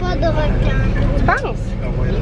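Steady low drone of a coach bus's engine and road noise heard from inside the passenger cabin, with brief voices over it.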